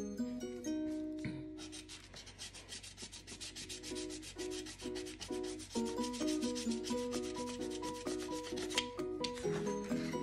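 A scratch-off lottery ticket being scratched: a steady run of short scraping strokes, several a second, that starts about a second and a half in and stops near the end. Faint background music plays underneath.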